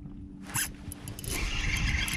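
Spinning reel being cranked to reel in a hooked fish: a fast, zipper-like rasping whir made of fine clicks that builds up over the second half, after a brief sudden swish about half a second in. A faint low steady hum runs underneath.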